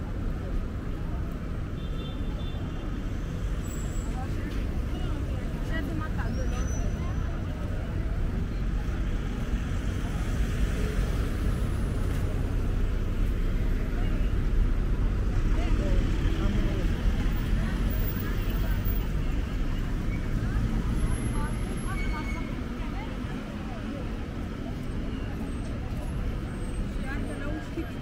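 Busy city street ambience: a steady rumble of passing road traffic with passers-by talking, the traffic growing louder through the middle and easing off again.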